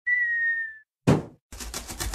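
Cartoon sound effects: a short whistle that sinks slightly in pitch, then a single thunk about a second in as the cardboard box lands. Then a quick, rhythmic scratchy sawing as a utility-knife blade cuts up through the box's taped top.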